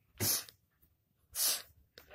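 Two short, sharp puffs of breath, about a second apart.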